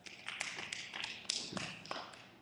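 Light, scattered applause from a few people in the audience: quick, irregular claps that thin out near the end.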